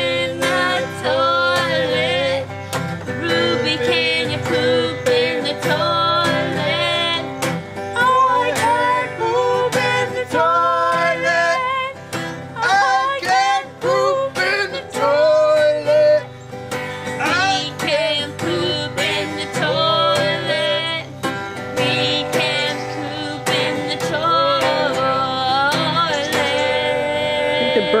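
A woman and a man singing together to a strummed acoustic guitar.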